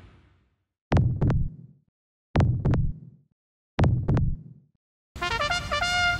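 Heartbeat sound effect: three slow double thumps (lub-dub), about one and a half seconds apart, each dying away into silence. A different sound with steady pitched tones comes in near the end.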